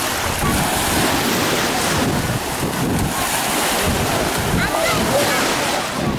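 Small waves washing onto a sandy shore, with wind buffeting the microphone in a steady rush. Faint distant voices come through near the end.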